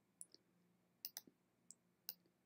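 Several faint computer mouse clicks: two near the start, a quick run of three about a second in, and one more shortly after, as the on-screen sliders are clicked and dragged.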